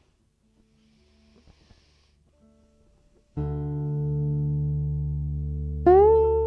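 After a few seconds of near quiet with faint handling noises, an acoustic guitar chord comes in suddenly about three seconds in and rings on steadily. Near the end a higher note slides up and holds over it as the song begins.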